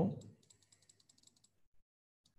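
Computer mouse scroll wheel clicking rapidly, about ten light clicks a second for just over a second, as a list is scrolled.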